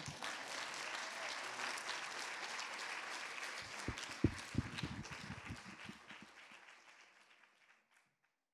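Audience applauding after a talk, a dense patter of clapping that dies away over the last few seconds.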